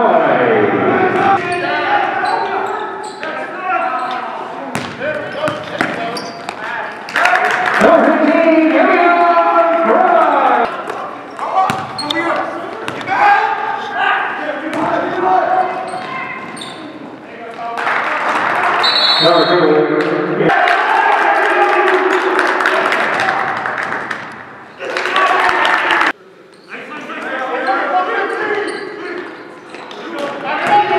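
Live basketball game sound echoing in a gym: a basketball dribbling on the court, with players' and spectators' voices throughout.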